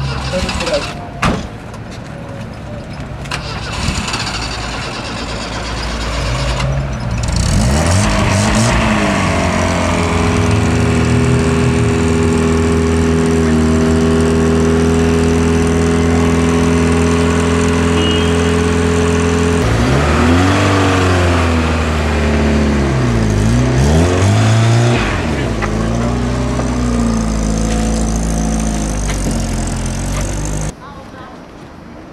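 A motor vehicle's engine running close by. It comes in several seconds in and rises in pitch, holds a steady note, then drops and picks up again twice in the second half. Before it there are a couple of sharp knocks.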